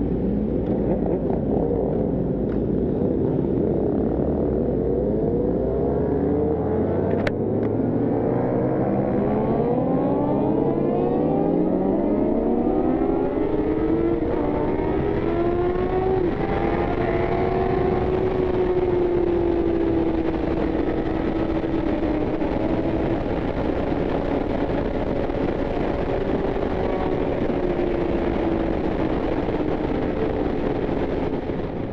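Yamaha FZ1's inline-four engine accelerating hard, its pitch climbing in several runs through the gears over the first half, then holding steady at high revs at speed. Heavy wind rush on the microphone throughout, with one brief click about seven seconds in.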